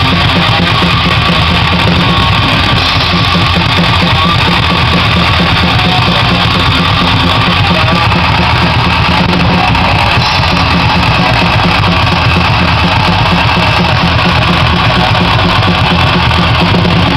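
A live metal-punk band playing loud and without a break: distorted electric guitar over a drum kit with crashing cymbals.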